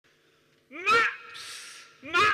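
A man's loud, rising shout about 0.7 s in, followed by a short hiss.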